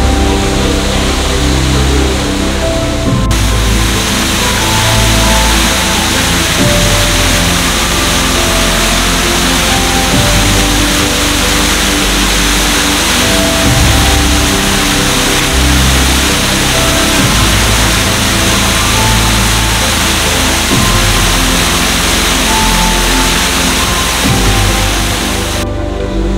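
Background music laid over the steady rush of water from the hot spring overflow pouring into a Roman drain. The rush of water grows louder about three seconds in.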